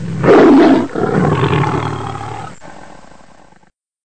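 Lion roar: a loud first burst, then a longer roar that fades away and stops abruptly.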